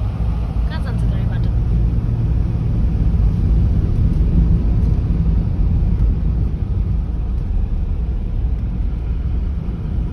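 Road noise heard from inside a moving four-wheel-drive vehicle on a wet road: a loud, steady low rumble of engine and tyres with a hiss above it.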